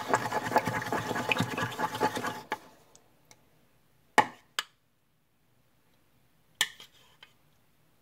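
Homemade slime being squished and poked by hand close to the microphone: a rapid crackle of small wet pops and clicks that stops suddenly about two and a half seconds in. A few separate sharp clicks follow.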